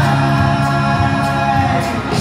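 Live rock band of electric guitars, bass and drums playing a held chord, with singing, amplified through a large hall's PA. The held sound changes just before the end.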